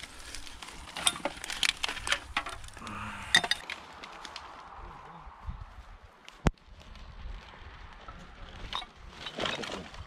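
Broken glass and litter clinking and rustling as it is picked out of dry undergrowth by gloved hands for a rubbish bag, with a quick run of sharp clinks over the first few seconds. A single sharp click follows about six and a half seconds in.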